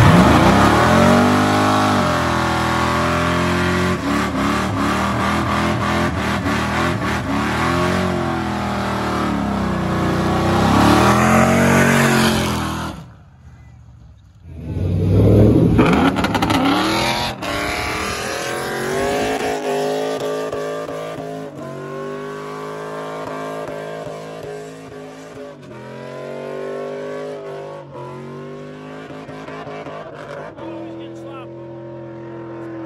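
Performance car engines revving hard and loud, the pitch sweeping up and falling back again and again. After a short drop about 13 seconds in, an engine revs and runs at high rpm again, with several engine tones layered together.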